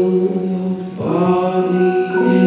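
Male singer holding long wordless notes into a handheld microphone, a new note starting about a second in, with soft instrumental backing under the voice.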